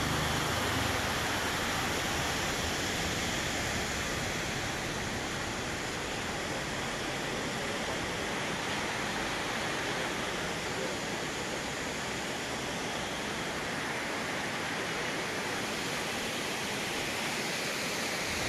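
Steady rushing of a waterfall: an even hiss of falling water that holds at one level throughout.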